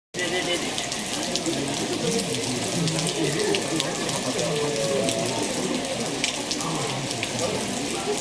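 Steady rain falling, an even hiss with scattered small drip ticks, with people's voices talking underneath.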